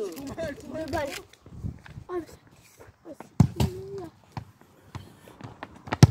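Voices talking and calling out, with two sharp thumps of a football being kicked: one about three and a half seconds in, followed by a held "oh", and one at the very end.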